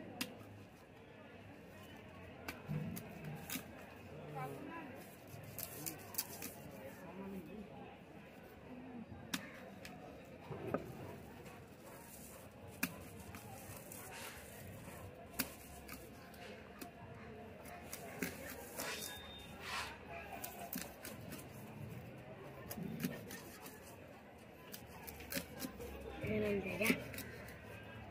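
Cleaver chopping a wallago catfish into steaks on a wooden block: irregular sharp knocks and cuts, with indistinct voices in the background.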